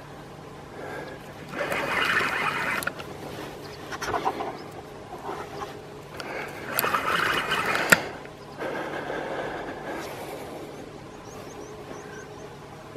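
Spinning reel being wound in two bursts of a second or two each, about one and a half and six seconds in, gaining line on a hooked Russian sturgeon; a sharp click ends the second burst.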